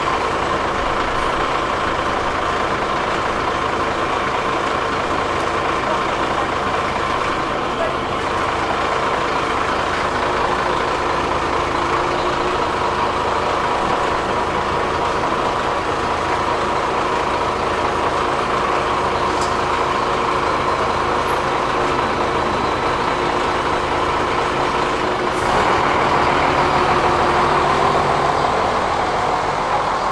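City bus engine idling at a stop: a steady engine hum with a slow, regular throb. About 25 seconds in, a louder rushing noise sets in and lasts several seconds.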